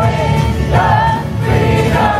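Live worship music: a band playing while many voices sing long held notes.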